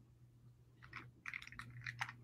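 Near silence with a low hum, then from about a second in a handful of faint, quick clicks and small handling noises.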